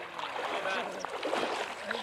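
Voices of several people, not clearly worded, over a steady background hiss.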